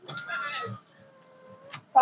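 A high, drawn-out voice call lasting under a second, then a faint steady hum that rises in pitch near the end.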